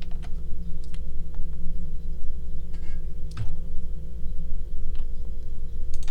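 A steady low electrical hum, with a few faint, scattered clicks of a computer mouse and keyboard being worked in a pause between words.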